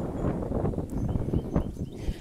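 Footsteps on a sidewalk while walking, with wind rumbling on the phone's microphone.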